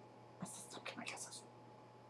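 Faint whispering: a few short hissy sounds over about a second, starting about half a second in.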